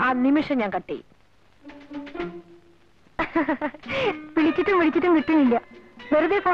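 Film dialogue in Malayalam: a woman speaking sharply, then a short pause holding a few quiet notes of background music about two seconds in, then more speech.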